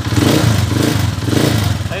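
Honda TMX155 single-cylinder four-stroke motorcycle engine running and revved in about three short throttle blips, running smoothly after its overhaul.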